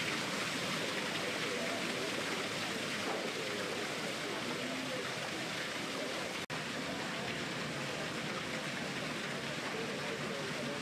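Fountain water falling and splashing steadily into its basin, with faint voices of people in the background. The sound cuts out for an instant about six and a half seconds in.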